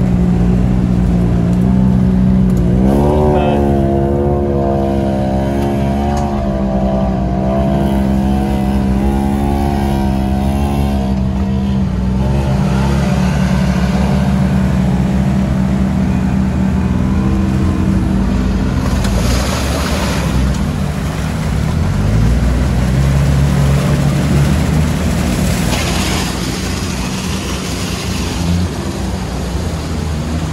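Side-by-side UTV engines running and revving as they drive through a flooded mud trail, the pitch rising and falling with the throttle. Water and mud splash in rushing bursts about two-thirds of the way through and again near the end.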